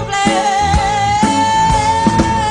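A female singer holds one long note, wavering slightly at first, over a band with a steady drum beat and guitar.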